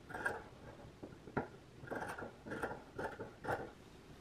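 Fabric scissors snipping through a sewn seam allowance in a run of short cuts, about two a second, trimming one layer down by a quarter of an inch to grade the seam.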